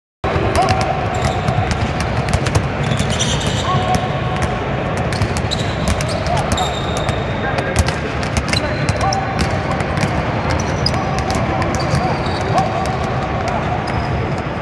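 Several basketballs being dribbled on a hardwood court, a dense run of overlapping bounces several times a second, with short high squeaks of sneakers on the floor scattered through it.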